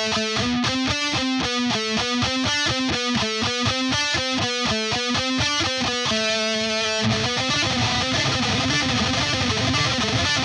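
Electric guitar with Fishman Fluence Modern humbuckers, played alternate-picked with steady down-up strokes through a short repeating four-note figure. About six seconds in, one note rings out, and then the picking turns faster and the notes run together.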